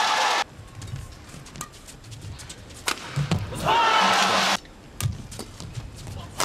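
Badminton rally: sharp racket strikes on the shuttlecock a second or more apart, between two loud bursts of arena crowd cheering. The first cheer ends abruptly just after the start, and the second comes about three and a half seconds in and lasts about a second.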